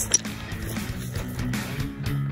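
Background music led by guitar, with sustained notes changing in pitch.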